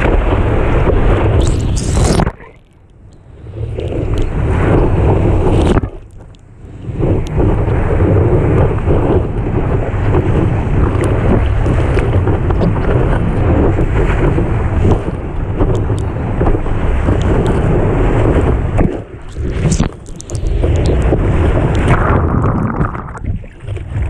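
Loud rush of whitewater and wind buffeting a surfboard-mounted action camera as a surfer paddles into and rides a wave. The wash drops out sharply a few times, about two seconds in, around six seconds, and briefly near the end.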